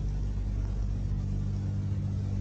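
Steady low electrical hum, a few even tones stacked at the mains frequency and its multiples, with a light hiss above it.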